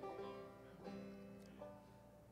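Banjo played softly: a chord rings out and fades, and fresh notes are plucked twice more, about a second in and again shortly after.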